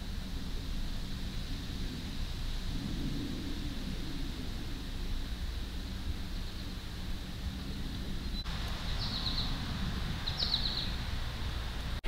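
Outdoor ambience: a steady low rumble, with two brief high bird chirps near the end.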